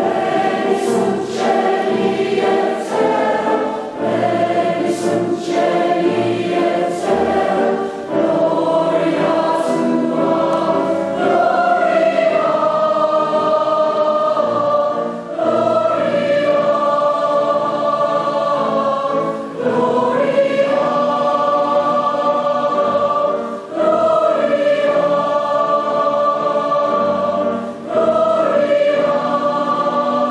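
Mixed amateur choir singing with piano accompaniment, in long held phrases of a few seconds each with brief breaks between them.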